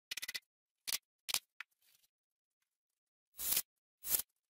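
A quick rattle of handling knocks at the start and a couple of short clicks, then near the end a brief burst of a cordless drill boring into a pine 2x4.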